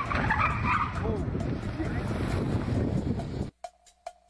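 An SUV driving up across a parking deck: engine and tyre noise, with voices over it early on. The sound cuts off suddenly about three and a half seconds in, giving way to a quiet electronic music beat.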